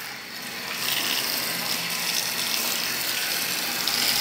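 Garden hose spraying water onto a wooden stool top and wet paving: a steady hissing splash that grows louder about a second in.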